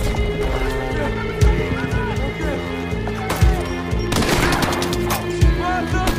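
Film battle soundtrack: a music score of held tones with a deep drum hit about every two seconds, under gunfire that thickens into a dense burst about four seconds in, and indistinct shouting.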